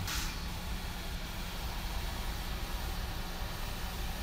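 Steady hiss of air over a low hum from a Philips V60 non-invasive ventilator running in BiPAP (S/T) mode, its blower keeping up a continuous flow that leaks out of the unsealed circuit at about 53 litres a minute.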